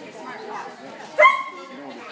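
A dog barks once, short and loud, a little over a second in, over low voices in the background.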